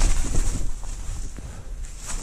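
Footsteps on dry leaves and twigs, a few scattered crackles, with wind rumbling on the microphone for the first half-second before it eases.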